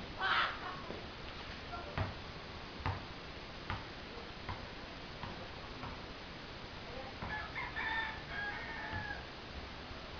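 A rooster crowing in a drawn-out, broken call from about seven seconds in. Before it, a basketball bounces on a concrete court with sharp knocks, about one a second.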